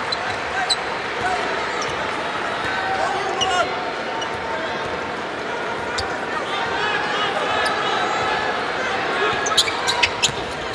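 Steady arena crowd noise with a basketball being dribbled on the court, a few sharper bounces standing out near the end.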